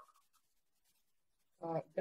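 Near silence in the call audio for about a second and a half, then a man starts speaking in Serbian.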